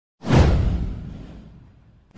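A whoosh sound effect that starts suddenly just after the start, sweeps downward in pitch over a deep rumble, and fades away over about a second and a half.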